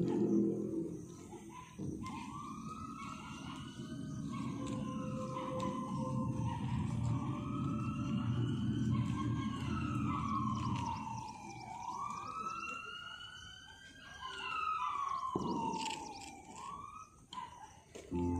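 A wailing siren on the skit's soundtrack, its pitch sliding slowly up and down, over a low rumbling noise; backing music fades out in the first couple of seconds and the siren stops shortly before the end.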